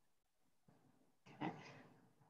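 Near silence on a video call, with one brief faint sound about a second and a half in.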